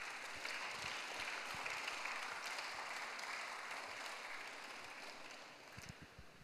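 Audience applauding steadily, then fading out about five seconds in.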